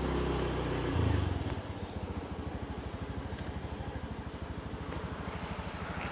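Small motor scooter engine running at low speed: it swells briefly about a second in, then settles into a steady, rapid low putter.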